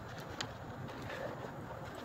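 A few light clicks and paper rustles of hands handling a paper wrapper and a thin plastic bottle, over a steady low background rumble.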